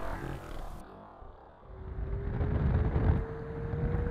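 Water splashing over the model at first, then the steady whine of the RC Twin Otter seaplane's electric motors, rising slowly in pitch, over low rumbling water noise as the model taxis on its floats.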